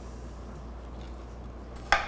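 One sharp knock near the end as watermelon cubes go into a glass mixing bowl, over a faint steady room hum.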